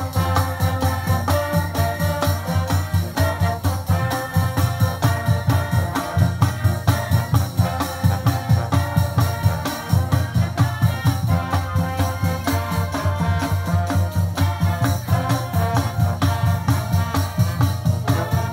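High school marching band playing: sustained brass chords over a steady, regular drum beat.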